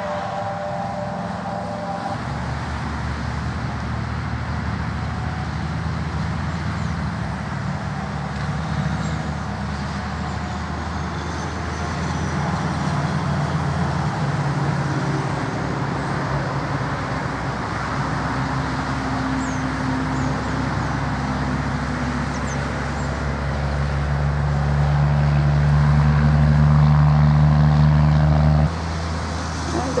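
A steady low engine hum over road-traffic noise, growing louder in the last few seconds and cutting off abruptly just before the end.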